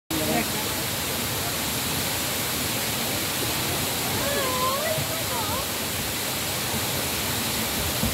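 A tall waterfall cascading down a rock face: a steady, even rush of falling water that holds the same level throughout.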